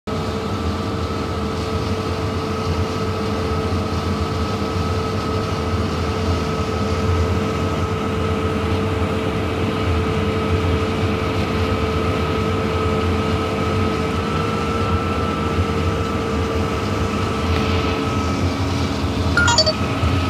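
Claas Lexion 740 combine harvesting corn, its engine and threshing machinery running in a steady drone with a whine held at one pitch.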